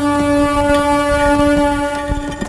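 A single long horn-like note from the film's background score, held at one steady pitch with a low rumble beneath it.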